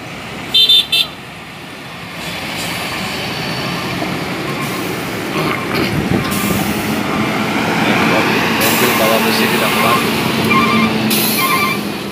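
Two short vehicle horn toots about half a second in. Then a heavy Sinotruk HOWO diesel tractor unit works slowly uphill hauling a pipe-laden low-bed trailer, its engine and rolling noise growing louder as it passes close by. The title says the truck is not strong enough for the climb. Near the end comes a run of short, evenly spaced beeps.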